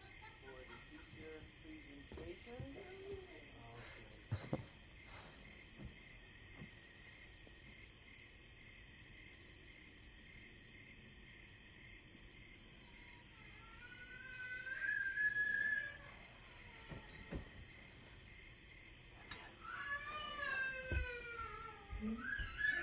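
Night ambience: a steady high-pitched insect chorus, with a few soft knocks about four seconds in. An animal gives one long call that rises and then holds about fourteen seconds in, and several falling calls near the end.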